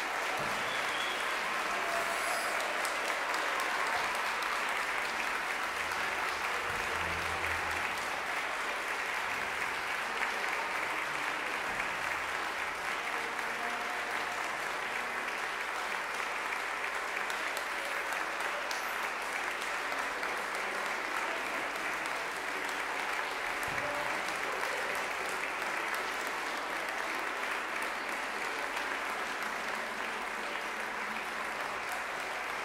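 Audience applauding, steady and sustained.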